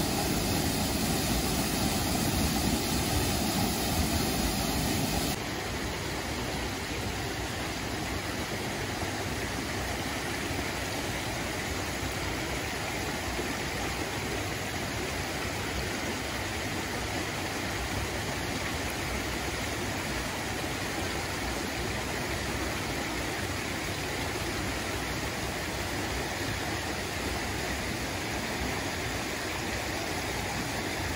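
Shirogane Falls, a waterfall about 22 m high, pouring into its plunge pool with a steady rush of water. About five seconds in, it cuts suddenly to a shallow mountain stream rushing over rocks, a steady rush that is a little quieter.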